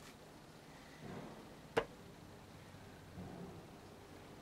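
Quiet handling noise with one sharp knock a little under two seconds in.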